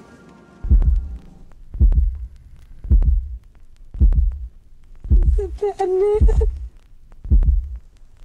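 Deep, heartbeat-like thuds of trailer sound design, about one a second. A voice briefly rises and falls over the beats in the middle.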